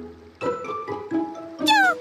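Cartoon baby pterodactyl's squawk, a high-pitched falling cry about one and a half seconds in, made in place of a duck's quack. Soft background music plays under it.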